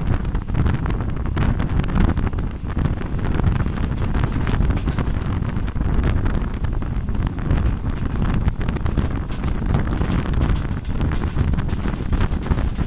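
Wind buffeting the microphone over the steady low rumble of a moving passenger train, heard from beside the coach as it runs along the track.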